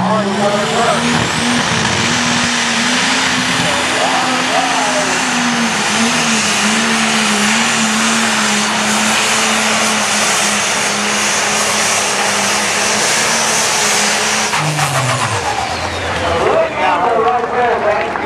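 Turbocharged diesel engine of a 10,000 lb Pro Stock pulling tractor running flat out under load as it drags the weight sled, a steady loud tone with a hiss on top. About fifteen seconds in, the throttle comes off and the engine's pitch falls quickly as it winds down at the end of the pull.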